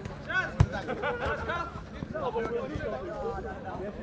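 Players' voices calling across a football pitch, with one sharp thud of a football being kicked about half a second in.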